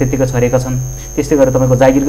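A man talking over a steady low electrical hum, with a thin high steady whine above it. The talk breaks off briefly about a second in.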